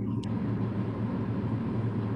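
A steady low hum with an even hiss over it, like a running fan or ventilation.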